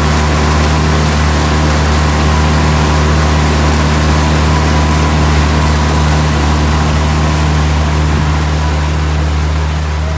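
A pontoon boat's motor running steadily under way, with water rushing past; the sound eases off a little near the end.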